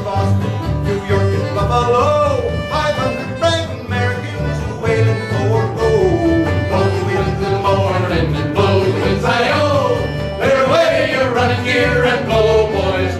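An acoustic folk band playing a whaling song with banjo, mandolin, guitar, accordion and upright bass, a steady bass pulse under the melody.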